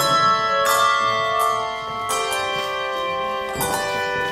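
Handbell choir playing a slow tune: chords of handbells struck about every one and a half seconds and left ringing, each new chord sounding over the fading one before.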